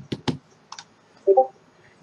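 A few quick keystrokes on a computer keyboard, clicking in a short burst, then a brief hummed vocal sound about a second and a half in.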